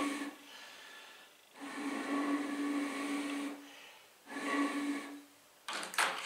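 Glass jam-jar pulse jet resonating with a steady hollow hum over a breathy hiss, in three bursts: a short one at the start, a longer one about two seconds long, then a short one near the end.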